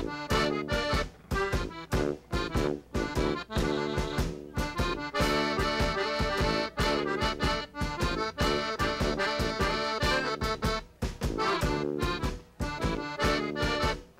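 Klezmer band playing live, the accordion out front over tuba and drums with a steady driving beat.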